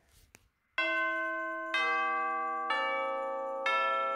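Background music starts a little under a second in: bell-like chimes, a new note struck about once a second, each ringing on and slowly fading as the next comes in.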